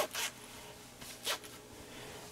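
Jacket zipper being zipped up: two short rasps, about a quarter second in and again just past a second.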